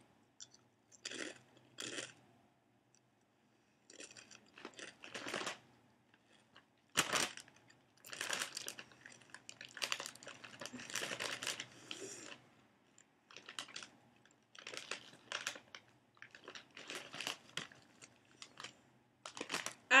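Kettle-cooked potato chip being bitten and chewed: a run of irregular crisp crunches, the loudest about seven seconds in.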